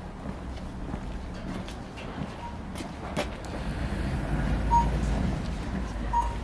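Low, steady rumble of street traffic with wind on the microphone, swelling louder about four to five seconds in, with a few sharp clicks around three seconds in.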